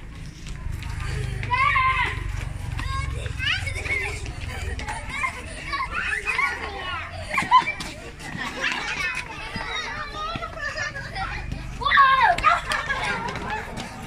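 A group of young children at play, shouting, squealing and laughing as they run and dodge, with a loud burst of shrieks about twelve seconds in.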